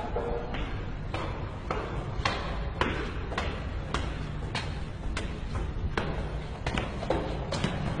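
Footsteps climbing stairs at an even pace, a little under two steps a second, each step echoing in the stairwell.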